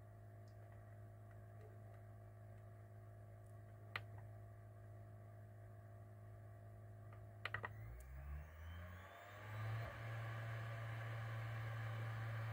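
Faint clicks of the front-panel buttons on a Fostex CR500 CD recorder, one about four seconds in and a quick few near eight seconds, then the disc spinning up with a rising whine as the drive starts finalizing the CD. A low steady hum runs underneath.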